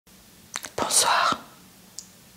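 A woman whispering a short word or phrase close to the microphone, preceded by a couple of small lip clicks.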